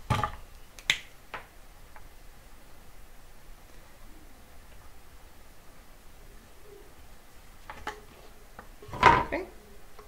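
A small dry-erase marker and handheld whiteboard being handled. A sharp click about a second in and a smaller one soon after, then mostly quiet room tone with only faint small noises while the time is written on the board.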